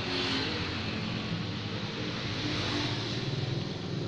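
A motor vehicle engine running steadily with slight shifts in pitch, over a constant hiss.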